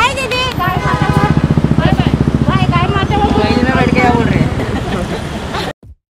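A motor vehicle engine running close by with a fast, even throb, under people talking. The sound cuts off abruptly near the end.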